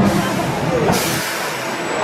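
A hiss of released air from the roller coaster's station equipment as the train pulls in. It grows louder and brighter about a second in and stops near the end.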